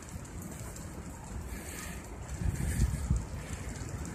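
Wind buffeting the microphone of a camera carried on a moving bicycle, a low rumble that swells in uneven gusts about two and a half seconds in.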